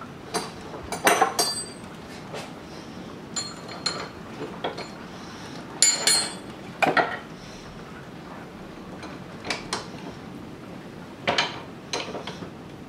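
A combination wrench clinking against the bolt of a mower-deck gauge wheel and a bench vise as the nut is worked off by hand: a dozen or so sharp metallic clinks spread through, some ringing briefly.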